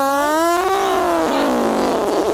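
A person's long, drawn-out vocal cry: one held tone that rises slightly and then slowly falls in pitch over about two seconds.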